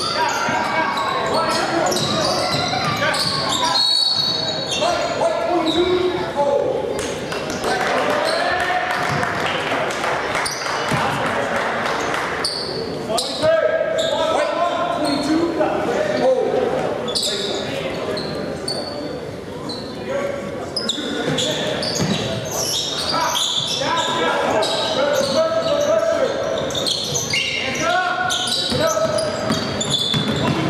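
A basketball being bounced on a hardwood gym floor during live play, among players' and spectators' shouts and calls, with the echo of a large gymnasium.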